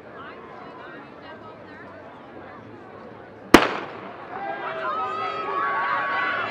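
A starter's pistol fires once, a sharp crack a little past halfway through, starting the race. Spectators break into cheering and yelling right after it, growing louder.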